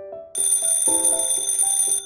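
Alarm clock bell ringing over a short melodic music sting. The ringing starts about a third of a second in and stops abruptly at the end.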